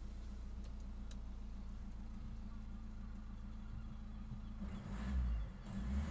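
Citroën C3 Picasso's 1.6 HDi four-cylinder turbo diesel idling steadily just after being started, heard from inside the cabin. Some low rumbling joins in near the end.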